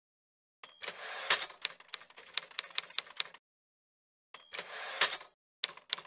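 Typewriter sound effect. Twice, a short bell and the slide of a carriage return are followed by a quick run of key strikes, with short silences in between.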